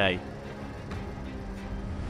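Street ambience with traffic noise and a faint steady low hum, at a moderate level.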